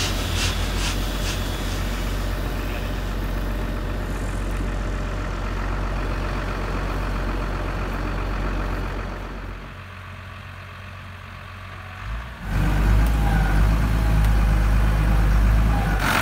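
Steyr CVT 150 tractor's diesel engine idling steadily. It is fainter for a couple of seconds past the middle, then suddenly louder and closer from about three-quarters of the way through, as heard inside its cab.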